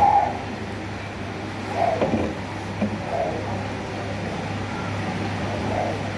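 Metal spoon scraping and clicking on a plate while scooping fried rice, with a couple of sharp clicks about two seconds in, over a steady low hum of air conditioning.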